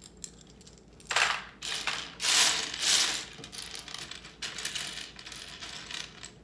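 Loose plastic LEGO bricks clattering and rattling against one another on a tray as they are handled and gathered by hand. The loudest burst of clatter comes about two to three seconds in, followed by softer clicking.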